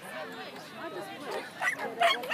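A dog barking, two quick sharp barks near the end, over the chatter of people talking.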